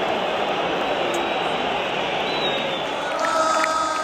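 Large football stadium crowd: thousands of voices shouting and chanting together in a dense, steady mass of sound. A steady high tone rises above the crowd about three seconds in.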